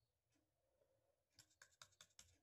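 Near silence, then from about a second and a half in, a few faint scratchy clicks of a paintbrush stirring paint in a small cup.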